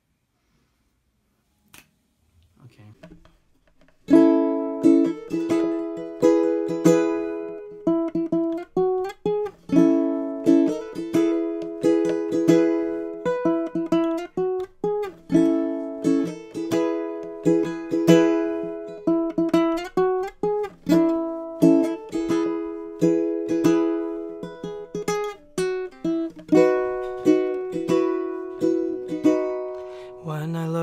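Baritone ukulele playing a steady rhythm of strummed chords, starting about four seconds in after a few seconds of near silence.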